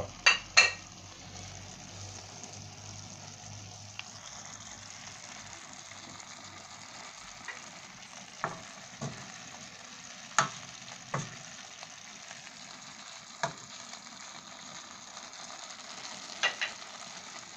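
Chicken and green squash frying in a stainless steel pot, with a steady sizzle. Now and then there are sharp knocks against the pot, the two loudest right at the start.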